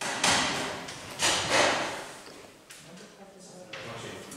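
Chalk writing on a blackboard: a series of scratchy strokes, the strongest near the start and around a second and a half in, weaker ones near the end.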